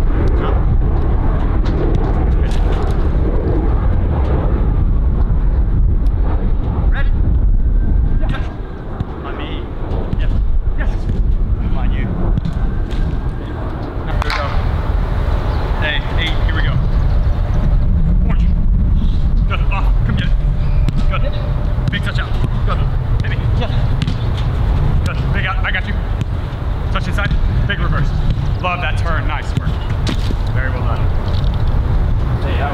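Wind rumbling on the microphone, easing briefly about eight seconds in, with faint voices and occasional sharp knocks.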